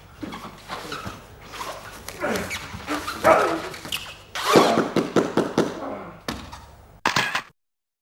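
Two grapplers struggling on a foam mat: strained grunts and heavy breaths mixed with the scuffle of bodies, irregular and loudest in the middle. It cuts off suddenly near the end.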